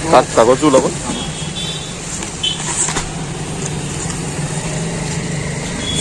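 Steady low motor hum over a background of road-traffic noise, after a brief spoken word at the start.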